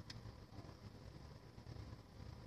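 Near silence: faint low room hum, with one soft tick just after the start.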